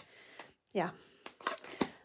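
A woman says a single "yeah" in an otherwise quiet small room, with a few faint clicks after it.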